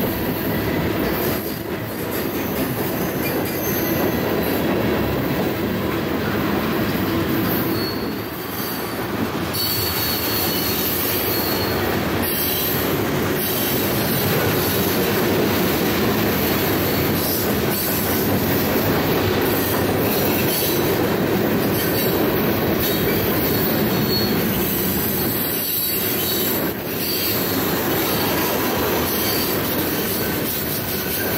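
Freight train cars rolling past at speed close by, a steady loud rush of steel wheels on rail. The noise dips briefly a few times as the gaps between cars go by.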